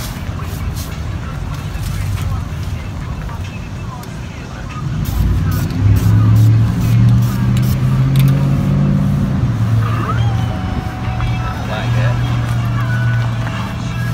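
A motor vehicle's engine running close by, a steady low hum that swells about five seconds in and holds.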